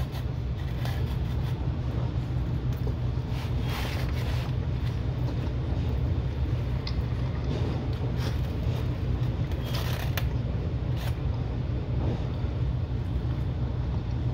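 A steady low machine hum, with soft eating sounds over it: chewing and a few light clicks of a plastic fork against a plastic food container.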